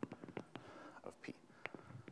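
Scattered light clicks and taps from a lecturer moving at a chalkboard, with faint breathy murmuring, in a pause of speech.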